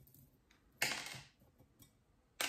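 Small aquarium gravel stones rattling once, briefly, about a second in, as a pinch of them is dropped onto potting soil, followed by a couple of faint clicks of stone.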